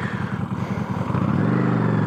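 Honda Shadow's V-twin engine idling with an even low pulse, then revving up about a second in as the motorcycle pulls away from a stop.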